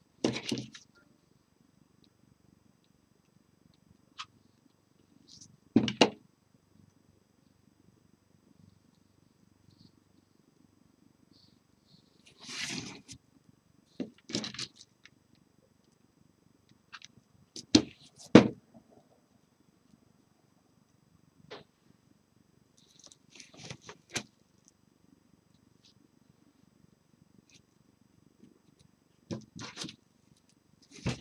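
Hand-crafting sounds of scissors snipping ribbon, a hot glue gun being worked and fabric being handled and pressed. They come as about ten brief clicks and rustles spaced irregularly over a faint, steady low rumble.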